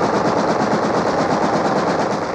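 A dense, steady crackle of very rapid small blasts, a continuous string of sharp reports with no pause between them.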